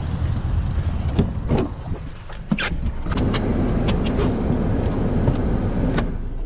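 Getting into a car: a sharp knock about two and a half seconds in, typical of a car door shutting, then small clicks and rustling inside the cabin, over a steady low rumble.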